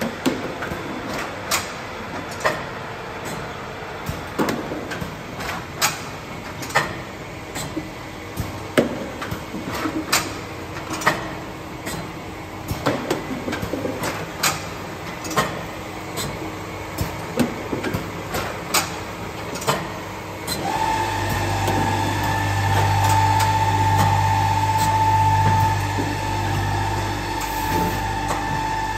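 Keck SK 11 packaging machine running a test cycle, its mechanism making irregular clacks and knocks about once a second. About twenty seconds in, a steady, louder hum with a high whine starts up and runs on.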